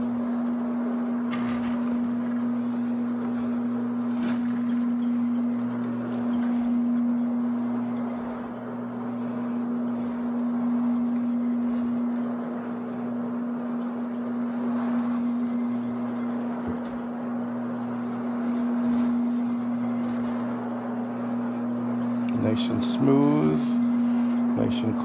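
CleanFix MD-180 rotary floor machine running on carpet: its motor gives a steady hum, with the hiss of the pad scrubbing the pile under it.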